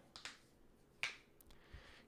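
Near silence, broken by one short, sharp click about a second in.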